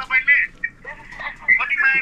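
Voices talking, part of it coming through a phone's speaker on a video call.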